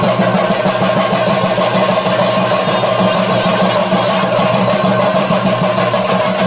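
Chenda drums beaten with sticks in dense, unbroken Theyyam drumming, with a kuzhal (double-reed pipe) holding a steady tone above them.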